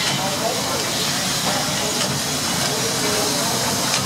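Steady hiss of steam from an old riveted steam boiler, with voices talking faintly underneath.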